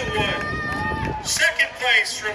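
A man's voice over an outdoor public-address system, echoing, with a drawn-out, held sound in the middle as at an awards announcement.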